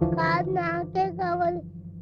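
Film song: a high voice singing sustained, wavering notes over a steady instrumental backing, the singing stopping about one and a half seconds in.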